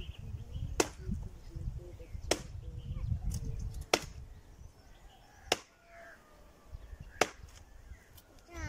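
Axe chopping wood: five sharp strikes about a second and a half apart.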